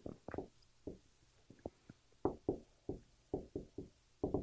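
Dry-erase marker writing on a whiteboard: about a dozen short, faint taps and strokes at an irregular pace as letters are put down.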